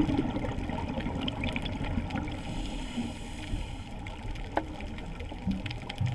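Underwater ambience on a coral reef: a steady low rumbling wash of water with scattered small clicks.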